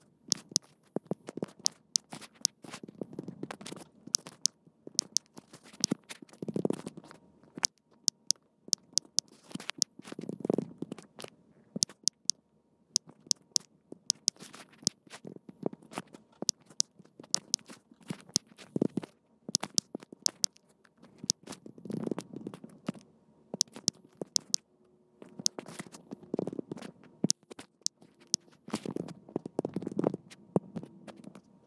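Quick, irregular clicks of typing and tapping on a smartphone's on-screen keyboard, in runs with short pauses, with a few soft low thumps between.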